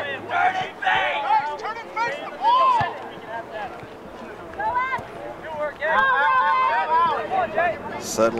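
Shouts and calls from players and spectators at an outdoor soccer game, several voices overlapping with background chatter, busiest near the end.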